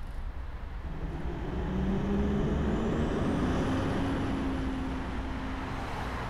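Minibus engine pulling away from a stop: its note rises as it accelerates, then holds steady, with a faint high whine rising with it.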